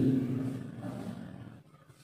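A man's voice holding a drawn-out vowel that trails off within the first second, then fades to quiet room tone, near silence at the end.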